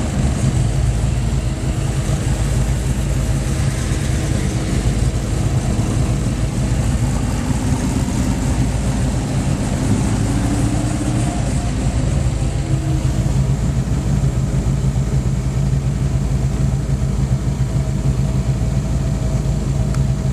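Car engine running steadily while driving, a continuous low rumble heard from inside the cabin of a hot rod.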